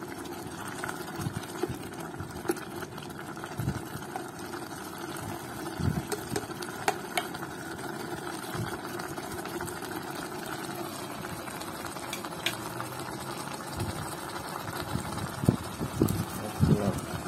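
Meat stew simmering in an electric pot and being stirred with a spoon, over a steady low hum, with occasional light clicks of the spoon against the pot.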